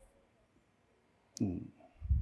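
A single sharp click about a second and a half in, followed at once by a short low thud: handling noise at the laptop on the lectern.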